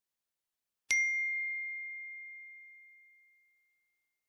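A single bell-like ding struck about a second in, a clear high tone that rings out and fades away over about two seconds.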